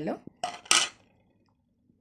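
Two short clatters of kitchen utensils against steel vessels, the second one louder.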